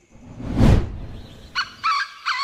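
A whoosh swells up and fades away in the first second, then a quick series of short bird calls starts about one and a half seconds in.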